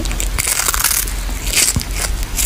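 A kitten crunching and chewing on a small whole fish, with a run of crisp bites about half a second in and another near the end.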